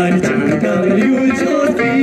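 Ladakhi folk song: voices singing a stepwise melody in unison, accompanied by plucked dranyen lutes.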